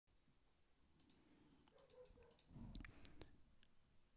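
Near silence with a few faint, scattered clicks and one sharper click about three seconds in.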